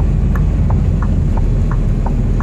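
Heavy truck heard from inside the cab while driving: a steady low engine and road rumble, with a light clicking about three times a second.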